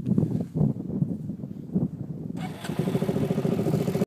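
Dirt bike engine running at low revs with an uneven chugging beat. About two and a half seconds in, a steady rushing noise joins it along with a steadier, higher engine note.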